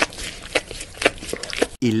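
A few short, sharp clicks and knocks, roughly one every half second, over low indoor background sound. Near the end the sound cuts abruptly to a narrator's voice beginning 'Eleven minutes later'.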